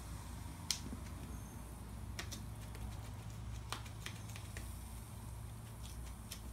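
A few faint clicks, spread out, over a steady low hum: quiet handling of the tool and strap.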